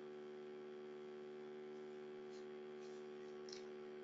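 Faint, steady electrical hum with a stack of evenly spaced overtones, holding one pitch throughout.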